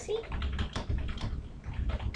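Typing on a computer keyboard: a quick, steady run of keystrokes, about eight a second.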